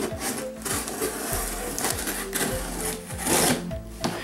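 Packing tape on a cardboard box being cut and scraped open by hand, with cardboard and tape rubbing and crinkling, and a louder tearing burst a little after three seconds in.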